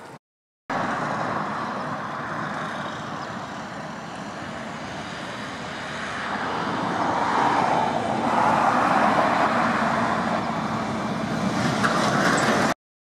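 Road noise of a car driving: an even rush of tyres and wind that starts after a brief dropout and grows louder past the middle.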